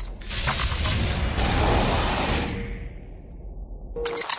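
Intro-animation sound effects: a few sharp mechanical clicks and a noisy whoosh over a deep rumble, fading out about three seconds in, then a sudden burst at the very end.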